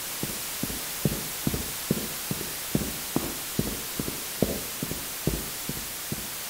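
Footsteps: a run of soft, irregular thuds, about two or three a second, over a steady hiss of static.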